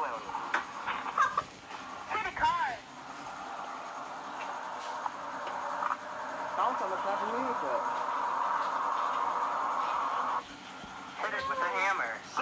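Short bursts of voices from home videos played through small tablet speakers. Then a steady, narrow-pitched rushing noise from the same speakers runs for several seconds, with a voice heard over it, and cuts off suddenly about ten seconds in.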